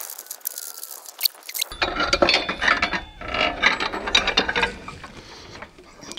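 Ratchet wrench clicking in quick runs as the bolts of a pole-mount antenna bracket are loosened. The clicking starts about two seconds in and dies away near the end.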